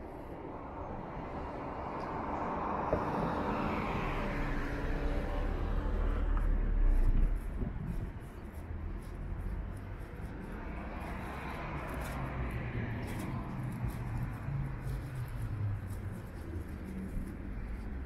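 Street traffic: a car draws nearer and passes close by about seven seconds in, its noise swelling and then falling away quickly, followed by another vehicle's engine passing more faintly later on.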